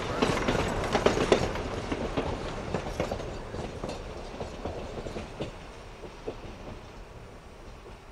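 Wheels of a narrow-gauge passenger train clicking and clattering over rail joints, fading steadily as the train rolls away.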